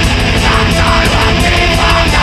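Black/thrash metal band playing at full volume: distorted electric guitars over fast, even drumming.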